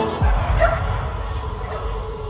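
A dog barking briefly about half a second in, with pop music playing underneath.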